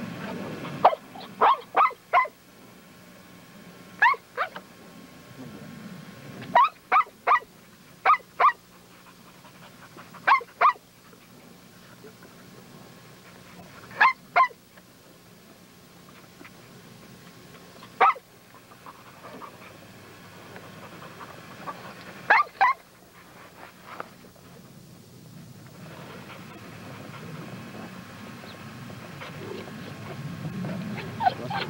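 A dog barking in short, high-pitched yips, some single and some in quick runs of two to four, with pauses of a few seconds between.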